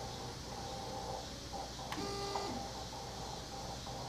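Shapeoko CNC's stepper motors with a faint steady whine. About halfway through there is a click and a short half-second whine as the machine makes a brief move.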